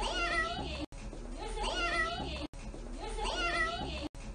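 A young boy saying "meow" in a high, cat-like voice, three times. The same clip repeats in a loop about every second and a half, with a brief abrupt cutout between repeats.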